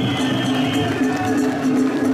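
Festival music with long, high held notes, heard over the voices of a crowd of shrine bearers.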